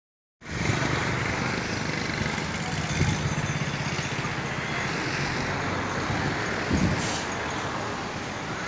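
Street traffic noise: a steady low engine rumble from nearby vehicles, with a brief hiss about seven seconds in.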